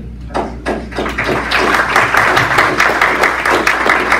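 Audience applauding: a few scattered claps at first, building within a second or so to steady, full clapping from the whole room.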